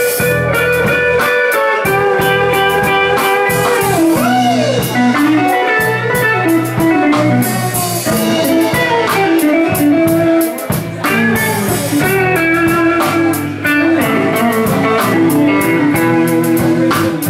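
Live blues band playing an instrumental passage: electric guitars over a drum kit, with one note sliding down in pitch about four seconds in.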